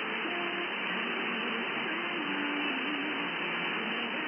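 Medium-wave AM reception on a software-defined radio tuned to 1330 kHz: steady static hiss, with a weak station's audio coming through faintly underneath as a wavering melody.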